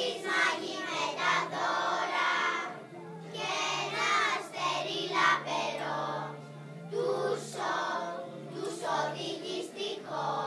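A children's choir singing a song together in phrases, over a low, steady accompaniment.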